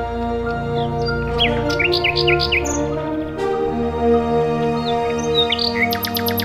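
Common nightingale singing: a quick run of sharp, pitch-sliding notes about a second and a half in, then scattered whistled notes later on. Soft background music with sustained tones plays under the song.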